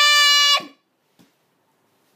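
A child's high-pitched voice holding one long, steady 'aah' note that cuts off about half a second in, followed by near quiet and a faint tap.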